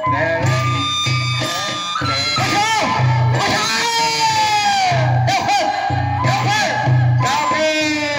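Bodo folk dance music: a steady low drum beat under a melody with sliding notes.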